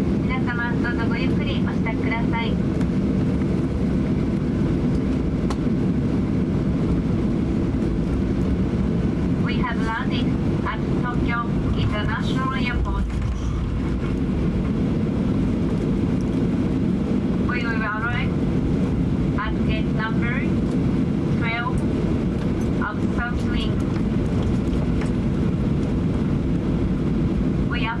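Steady low cabin rumble inside a Boeing 737-800 taxiing after landing, the CFM56 engines running at idle. Voices come through it at intervals.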